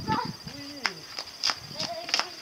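A few sharp clicks of sailing-dinghy rigging and fittings, irregular, about four in two seconds, with a voice talking in the background.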